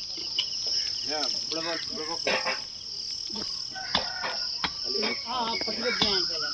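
Crickets chirring in a steady high-pitched drone, with voices talking faintly in the background and a few short clicks.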